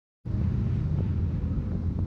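Heavy, steady low rumble of a moving bus's engine and road noise heard from inside the cabin, starting abruptly a moment in.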